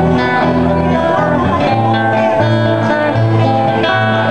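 Live acoustic guitar music played in a small group, with held low notes shifting every second or so under the strummed chords.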